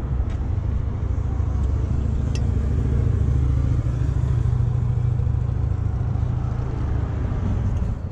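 Car engine idling steadily close to a camera mounted on the rear bike rack, a loud low rumble. Two faint clicks, one near the start and one about two and a half seconds in, come from the rack's clamp being handled.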